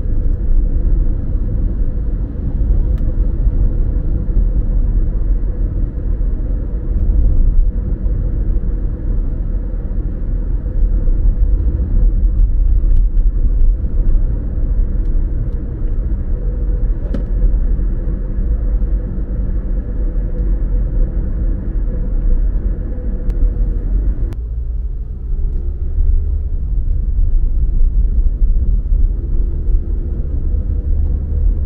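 Road noise heard inside a moving car's cabin: a steady low rumble of engine and tyres with a faint constant hum. About 24 seconds in, the higher part of the noise drops away and mostly the low rumble remains.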